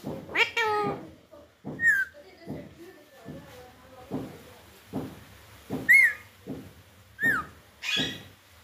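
Alexandrine parakeets calling: a run of short, repeated begging calls from the chicks being hand-fed, with three sharper, higher squawks about two, six and seven seconds in.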